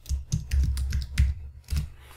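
Typing on a computer keyboard: an irregular run of quick keystrokes as a word is typed.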